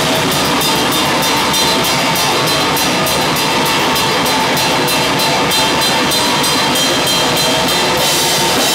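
Live hardcore band playing loud, heard from right beside the drum kit so the drums are the loudest part: a run of fast, even cymbal and drum hits that stops near the end.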